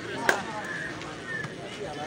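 A volleyball struck once by a player's hands during a rally: a single sharp slap about a third of a second in.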